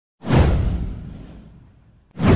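Intro whoosh sound effect with a deep low boom under it. It hits sharply just after the start and fades away over about a second and a half.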